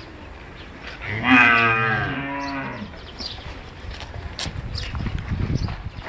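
A cow moos once, a single call of about two seconds that slides slightly down in pitch. Low scuffling sounds follow near the end.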